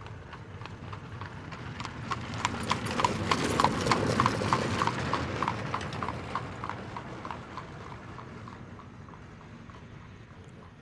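Hoofbeats of a horse cantering on arena sand: a quick, even run of strikes, about four a second, growing louder to a peak around four seconds in and then fading.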